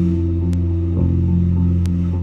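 Live band music: electric guitar and bass guitar holding a sustained low chord, with two faint clicks, one about half a second in and one near the end.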